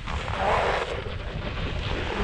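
Wind rushing over an action camera's microphone while riding down a snow slope, with the hiss and scrape of board or ski edges sliding on snow that swells about half a second in.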